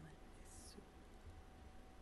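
Near silence: faint room tone with a low steady hum, and one brief soft whisper about half a second in.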